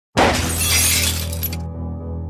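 Intro music sting: a sudden glass-shattering sound effect crashes in over a low droning music bed, then cuts off after about a second and a half, leaving the drone.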